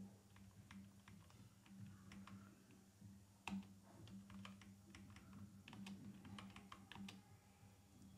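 Faint typing on a computer keyboard: scattered, uneven keystrokes, with one louder tap about three and a half seconds in.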